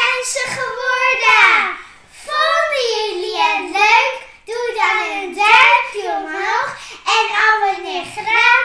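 Young girls singing a cheerful tune in sung phrases of a second or two with short breaks between them.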